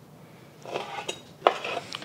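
Chef's knife slicing barbecued pork into strands on a cutting board, starting about half a second in, with the blade knocking sharply on the board about one and a half seconds in.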